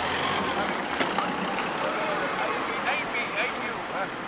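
Steady outdoor street noise with indistinct chatter from several people nearby and a single sharp click about a second in.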